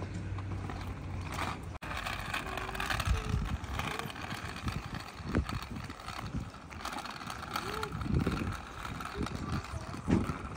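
Small wheels of a child's three-wheeled kick scooter rolling over rough tarmac, an uneven low rumble with outdoor noise around it.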